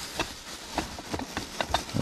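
Plastic grocery bags rustling and crinkling as a hand rummages through a cardboard box, with a few short clicks and knocks of items shifting inside.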